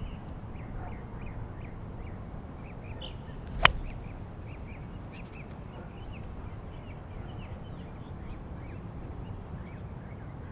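Golf iron striking the ball once with a sharp crack about a third of the way in. Birds chirp throughout.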